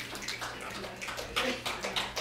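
Audience applauding: a dense, irregular patter of claps.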